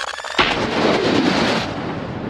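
Logo-sting sound effect: a short rapid rattle leads into a sudden loud booming impact about half a second in, which fades away over the next second and a half.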